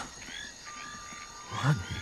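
Faint background of frogs calling, short chirps repeating, with a thin steady high tone joining a little after half a second in. A man's voice sounds briefly near the end.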